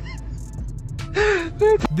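A short vocal exclamation like a gasp about a second in: two brief voiced sounds that each rise and fall in pitch, over low background noise.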